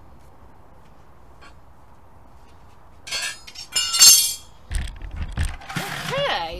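Metal hoof-care gear clinking and ringing a few times, starting about three seconds in, the loudest strike near four seconds. After that come low thumps and rubbing as the camera is handled and moved.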